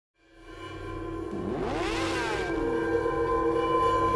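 Intro sting for a logo animation: it fades in from silence into sustained tones, with a sweep of pitch that rises and then falls about a second and a half in.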